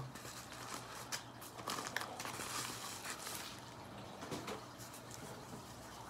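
Paper and plastic rustling and crinkling as sleeved photos are slid out of a padded mailer: a quick run of small crackles that thins out over the last couple of seconds.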